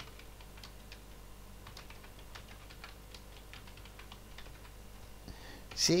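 Faint, irregular keystrokes of typing on a computer keyboard.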